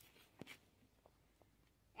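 Near silence: faint room tone with a couple of faint clicks about half a second in.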